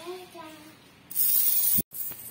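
A short child's voice, then about a second in a loud, steady hiss lasting under a second that cuts off abruptly into a moment of silence: a hissing transition sound effect at an edit between shots.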